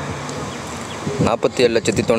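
A steady low buzzing hum with no clear source, fairly loud and unchanging, until a man's voice comes back in just over a second in.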